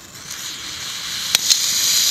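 Iron oxide and aluminium thermite catching from its magnesium fuse and burning: a hiss that grows steadily louder, with two sharp pops about a second and a half in.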